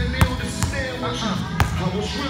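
A basketball bouncing on a hard indoor court: two sharp bounces, the first just after the start and the second about a second and a half later, over a voice and music.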